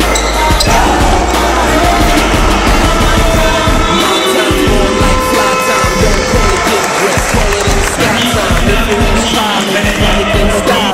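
Music with a basketball bouncing repeatedly on the court and a crowd in the gym.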